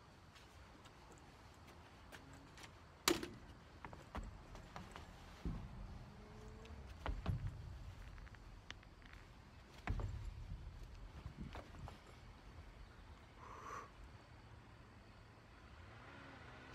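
Faint, scattered knocks and thumps: one sharp knock about three seconds in, then several duller bumps spread over the following seconds.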